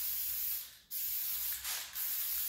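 Aerosol spray-paint can spraying in short bursts, the hiss breaking off briefly twice as the nozzle is released and pressed again.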